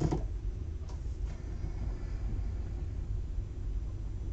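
A plastic liquid-glue bottle set down on a craft table with a single light knock, followed by two faint handling clicks about a second later, over a steady low background hum.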